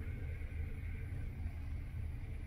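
Steady low rumble inside the cabin of a 2018 Audi A3 with its 2.0-litre turbocharged four-cylinder idling.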